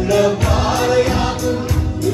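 Two men singing a Malayalam Christian devotional song into microphones, backed by keyboard and an electronic drum kit with a steady beat.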